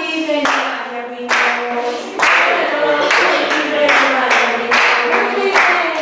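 A group of voices singing a song, with hand claps in a steady beat about one and a half times a second.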